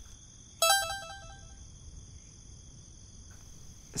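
A short electronic chime of a few quick repeated notes, about half a second in, fading within a second, over a steady background of chirping crickets.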